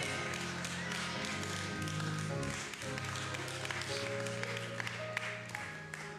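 Church keyboard playing sustained chords that change every second or so, behind the sermon, with scattered light taps.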